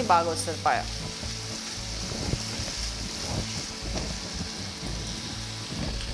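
Sliced onions and whole spices sizzling steadily as they fry in hot oil in a nonstick pot, stirred now and then with a silicone spatula.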